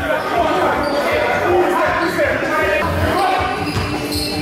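A basketball bouncing on a sports-hall floor during play, with sneakers squeaking and players' voices echoing in the hall.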